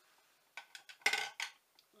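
Hard plastic makeup items such as cases, compacts and brushes being rummaged and knocked together: a quick flurry of clicks and clatters, loudest about a second in.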